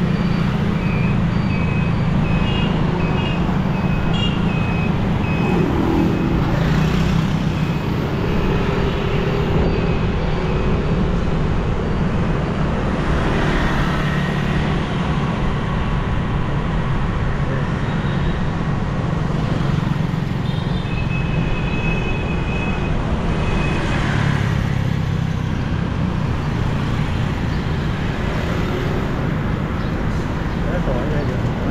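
Steady engine and road noise from riding a motorbike through busy street traffic, with other scooters passing. A few short, high-pitched beeps sound in the first seconds and again about two-thirds of the way in.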